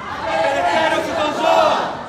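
A crowd of protesters shouting a slogan together, loud and in unison, answering a single voice that leads the chant.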